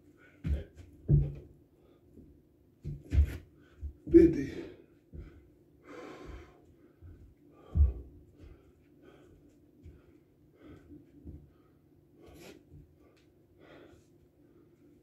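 A man breathing hard from doing burpees, with gasps and sharp exhales, and several thumps of hands and feet landing on a rubber floor mat in the first eight seconds. A faint low hum runs underneath.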